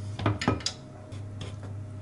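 Light knocks and clinks of a non-stick frying pan and its spatula being handled on a glass-top hob: several in the first second, then a few fainter ones, over a steady low hum.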